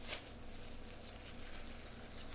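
Faint rustling of a plastic shopping bag being handled, with two brief crinkles near the start and about a second in.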